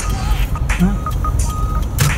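Low, steady rumble of a car's engine and cabin, heard from inside the car, with a high beep sounding on and off several times over it.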